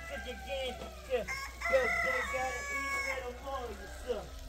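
Chickens clucking, then a rooster crows once, one long call starting about a second and a half in and lasting about a second and a half.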